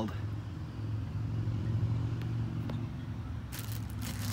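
A steady low engine hum, like an idling motor. Near the end comes a short rush of noise.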